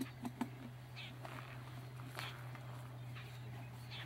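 Faint scattered clicks and short scrapes of a screwdriver and hands working screws into a small wind turbine's plastic nose cone, over a steady low hum.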